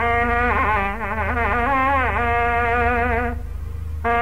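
Nadaswaram, a South Indian double-reed wind instrument, playing a Carnatic melodic phrase with sliding, bending ornaments in a bright, buzzy, reedy tone. The phrase breaks off a little after three seconds and a new one starts at the very end, over a steady low hum.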